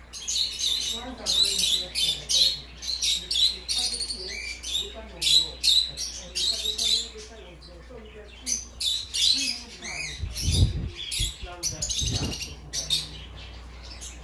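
Many caged pet birds, small parrots such as lovebirds among them, chirping and squawking in quick, overlapping high-pitched calls. Two low thumps come about ten and twelve seconds in.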